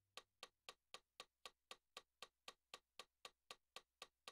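Faint metronome click ticking steadily, about four clicks a second, with no notes sounding.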